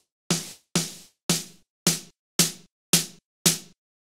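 Sampled snare drum looping through Ableton Live's Vocoder with its noise carrier, which adds a bright hiss to each hit. Seven hits come about two a second and stop shortly before the end. The vocoder depth is being raised toward 200%, and the hits get shorter and snappier as it goes.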